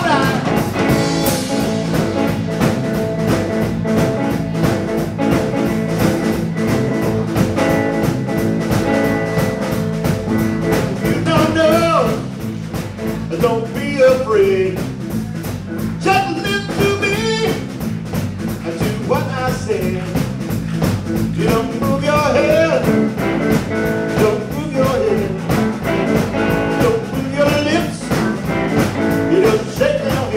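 Live blues-rock trio playing an instrumental break: electric guitar, electric bass and drum kit over a steady beat, with lead lines of bending notes through the middle.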